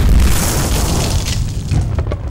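Explosion sound effect: a loud blast with a deep rumble that slowly dies away.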